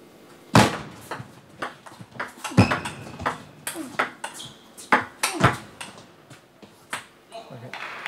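A table tennis rally: the plastic ball is struck back and forth by rubber-faced bats and bounces on the table, making an irregular run of sharp clicks, several a second.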